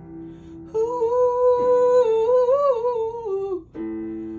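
A wordless hummed vocal note over held electric keyboard chords in a slow R&B song. The voice comes in under a second in, holds one pitch, then turns into a short wavering run that falls away before stopping near the end. The keyboard changes chord about halfway through.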